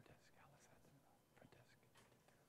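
Near silence with faint whispering voices.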